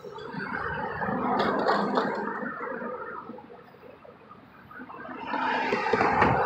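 Vehicles passing close by on the road, tyre and engine noise swelling and fading over the first few seconds, then another car approaching and passing near the end.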